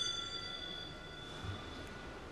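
A small altar bell ringing out and fading away, its high ring dying over the first second or so, with a soft low thump about one and a half seconds in. It is the bell that marks the epiclesis, as the gifts are about to be consecrated.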